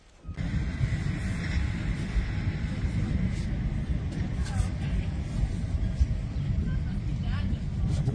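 Wind buffeting the phone's microphone: a loud, steady low rumble that starts suddenly just after the beginning.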